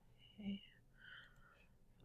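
Near silence, with a faint, short murmur of a woman's voice about half a second in and a softer whisper-like trace around a second in.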